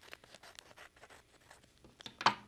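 Faint, irregular snips of small scissors trimming a folded wrapping-paper shape, with light paper handling.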